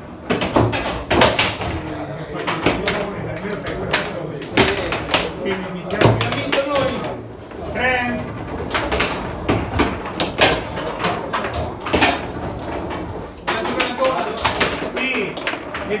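Foosball play: a run of sharp, irregular knocks as the ball is struck by the table's figures and hits the table walls, with people talking in the background.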